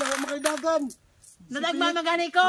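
Loose coins clinking and jingling as a handful is picked up from a small plate, under talking voices. The clinking stops about a second in, and the voices carry on near the end.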